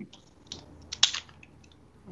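A few light clicks and taps, the loudest about a second in.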